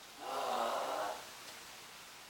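A person's voice making a brief wordless sound, about a second long, quieter than the talk around it.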